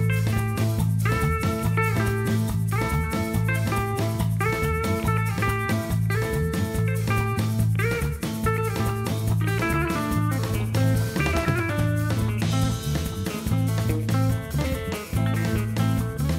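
Tuareg desert-blues band playing an instrumental passage: repeating electric guitar phrases over a steady bass guitar line and drum kit, with no singing.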